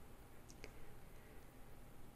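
Two faint clicks close together, about half a second in, like a computer mouse button being pressed and released, over near-silent room tone.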